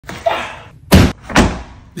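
Two loud thuds about half a second apart, each with a short fading tail, after a softer noise at the start.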